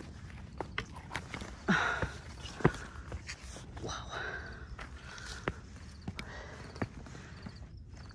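Footsteps on bare rock and loose stones of a steep trail: irregular scuffs and sharp clicks of shoes on stone, with hard breathing from the climb.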